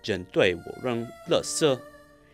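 A man speaking in quick Chinese-sounding syllables, over faint background music with steady held notes.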